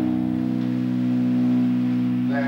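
Amplified, distorted electric guitar and bass from a sludge metal band holding one low chord that rings on steadily, the last chord of a song.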